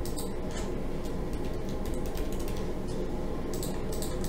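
Scattered light clicks of computer keys and a mouse while cells in a spreadsheet-like table are being edited, over a steady low background hum.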